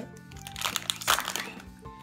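Foil booster-pack wrapper crinkling as it is torn open, loudest around a second in, over steady background music.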